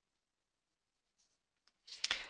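Near silence: faint room tone, with a couple of faint short clicks in the second half.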